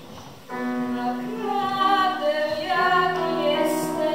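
A schoolgirl sings a song into a microphone, amplified over a PA, to electric keyboard accompaniment. Her voice comes in about half a second in, after a quieter keyboard passage, and the song carries on from there.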